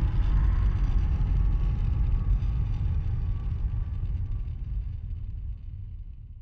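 A low, steady rumble that fades out gradually over the last couple of seconds.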